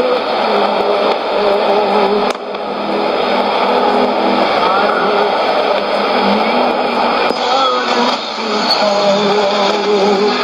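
Shortwave AM broadcast from a Sony ICF-2001D receiver: a weak voice buried in hiss and static. There is a short click and dip about two seconds in, and a little past seven seconds the sound changes as the receiver is retuned from 15470 to 11695 kHz.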